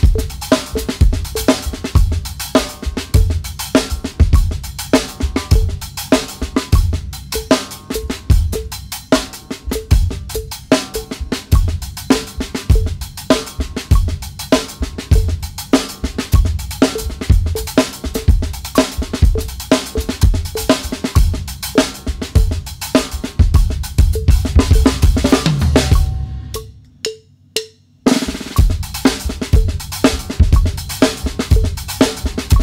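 Drum kit played fast in a paradiddle groove: right hand on the hi-hat, left hand on the snare, accented notes with bass drum kicks. Shortly before the end the playing stops for about two seconds, then starts again.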